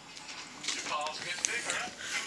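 Newspaper coupon inserts rustling and crackling as the pages are handled, with faint TV speech in the background.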